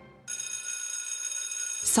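A steady high ringing, several pitches held together for about a second and a half, which cuts off suddenly.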